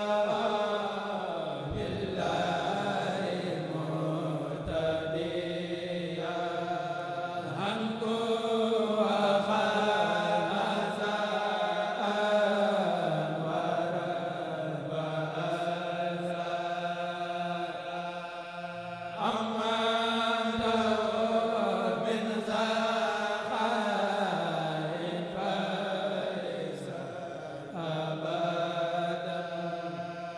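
A Mouride kourel, a group of men chanting a xassida (Sufi devotional poem) in unison into microphones, with no instruments. The singing moves in long drawn-out melodic phrases with gliding pitch and short pauses between them.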